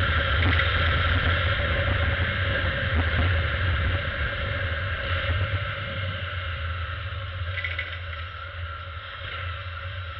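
Motorcycle engine running while riding, with steady wind and road noise on an action camera's microphone; the sound grows quieter in the second half.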